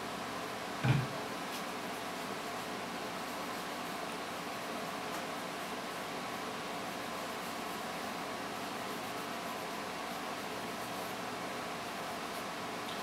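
Steady room noise, a low hiss with a faint hum, and one short low thump about a second in.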